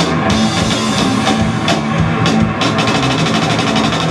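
Heavy metal band playing loud: electric guitars over a drum kit, with a run of rapid drum strokes a little past the middle.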